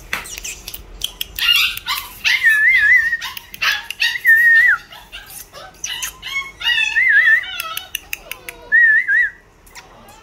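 Fluffy Pembroke Welsh Corgi puppy whining: about five high, wavering whines and yips, each under a second, with quick clicks in between.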